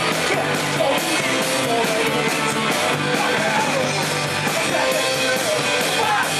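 A live Irish folk-punk band playing loud and fast: button accordion, guitars and drums over a steady driving beat.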